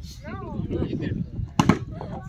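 A volleyball hit hard by a player's hand about one and a half seconds in: a single sharp hit, the loudest sound here. Brief shouts from players or onlookers come near the start.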